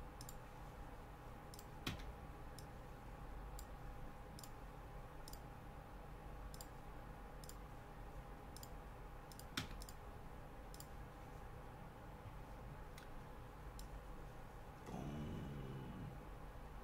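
Faint, scattered clicks of a computer mouse and keys, roughly one a second, with two louder clicks about two seconds in and just under ten seconds in, over a faint steady electrical hum.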